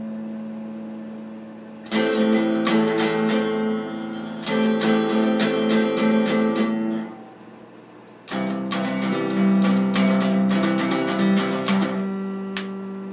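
Electric guitar being played: a chord rings and fades, then a passage of quick repeated strokes about two seconds in, a short lull about seven seconds in, and a second passage of quick strokes ending on a chord left ringing.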